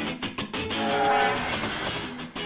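Music mixed with railway sound effects: a train horn, loudest about a second in, over clattering rail noise.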